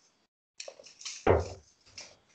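Steel-tip darts being pulled out of a bristle dartboard and handled: a run of light clicks and clinks, with one louder short thump about a second in.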